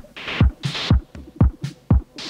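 Electronic music: a low, pitch-falling kick-like beat about twice a second, with bursts of hiss between the beats.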